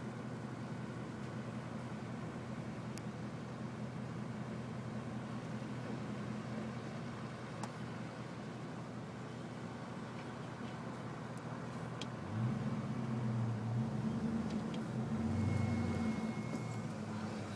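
Car engine idling steadily. About twelve seconds in, the engine speed rises and it gets louder as the car pulls away.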